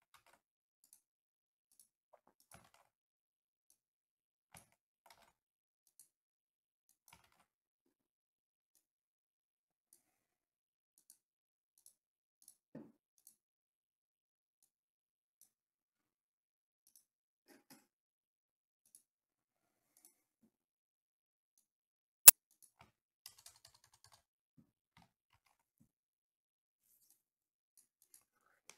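Computer keyboard typed sparsely and faintly, with long quiet gaps between scattered key clicks. About 22 seconds in comes one much louder sharp click, followed by a short cluster of clicks.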